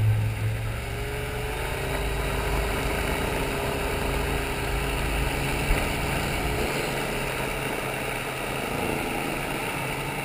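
Inflatable boat's motor running at speed, with the rush of its wake and spray, heard muffled through a waterproof camera housing. The engine's pitch rises slightly about a second or two in, then holds steady.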